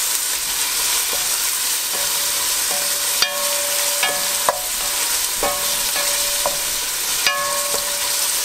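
Sliced precooked sausage, onions and garlic sizzling in olive oil in a stainless steel pot, stirred with a wooden spoon. The spoon knocks the pot several times, and each knock makes the pot ring briefly.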